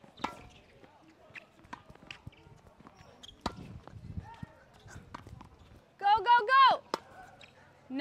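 Tennis balls being struck by rackets and bouncing on a hard court: several sharp, separate hits. A voice calls out loudly for a moment about six seconds in.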